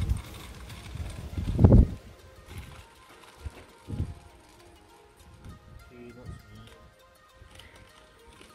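Peanuts being poured into a wire-mesh bird feeder, with faint clicks as they drop in. About a second and a half in there is a loud low rumble of handling noise on the microphone, and faint background music with steady tones plays underneath.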